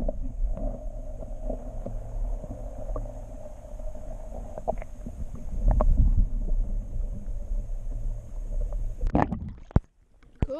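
Muffled underwater sound picked up by a camera held beneath the lake surface: a steady low rumble of water moving against the camera housing, with a faint hum and scattered small clicks and knocks. It cuts off abruptly near the end.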